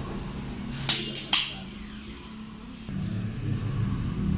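Restaurant room tone with a steady low hum, broken about a second in by two sharp clinks half a second apart, like tableware knocking. Near the end the low rumble grows louder.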